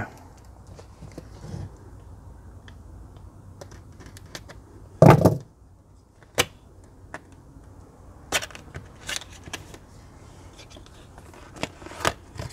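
A cardboard graphics-card box being handled and cut open: low rustling, one loud thud about five seconds in, then a few sharp clicks and rustles of cardboard.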